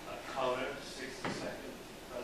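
Faint, off-microphone speech from an audience member asking a question in a lecture hall, with a single sharp knock a little past a second in.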